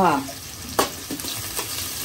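Sliced onions sizzling as they fry in oil in a kadai, stirred by hand, with a sharp knock of the stirring tool against the pan just under a second in and a few lighter taps after it. A short falling voice sound at the very start is the loudest moment.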